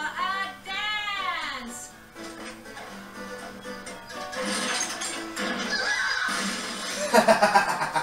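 Animated TV episode soundtrack playing in a small room: music with voices, including gliding, arching vocal lines early on, then fuller music, and a loud choppy burst of laughter near the end.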